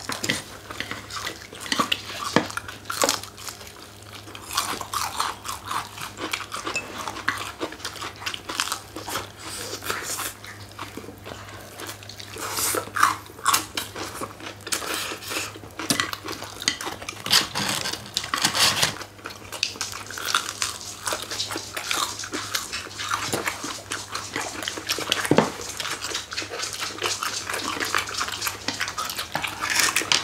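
Close-up eating sounds of crispy fried chicken wings: irregular crunching bites, chewing and lip-smacking, with occasional clicks of chopsticks on bowls.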